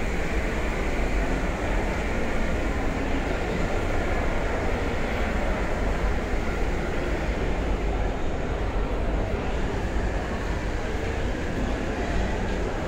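Steady low rumbling background noise inside a shopping mall, an unbroken hum and hiss with no distinct events.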